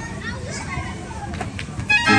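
Indistinct voices over steady background noise.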